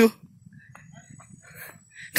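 Quiet outdoor background between words: a few faint short animal calls and a thin, steady high-pitched whine.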